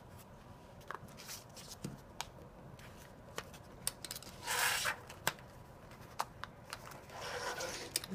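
Handling sounds of a metal binder clip and coin battery on a paper circuit: scattered small clicks and taps, with paper rubbing and rustling about halfway through and again near the end.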